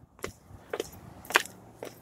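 Footsteps on asphalt pavement, about four steps at an even pace of roughly two a second.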